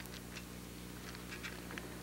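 Quiet outdoor ambience: faint short ticks scattered irregularly over a steady low hum.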